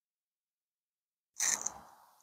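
Dead silence with the sound cut out completely for about a second and a half, then a brief rustle of outdoor noise that fades within half a second.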